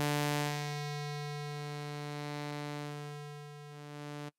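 Parsec 2 software synthesizer holding one sustained low note while its saw/square wave mix is swept. The tone twice turns hollower, as the even harmonics drop out towards the square wave, then buzzier again towards the sawtooth.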